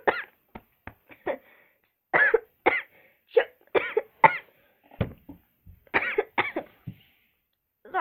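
A girl coughing over and over in short bursts, in several clusters, choking on fruit juice from a chewy candy. The coughs stop about a second before the end.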